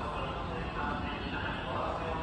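Station platform ambience: indistinct voices and footsteps over a steady low rumble, with no single sound standing out.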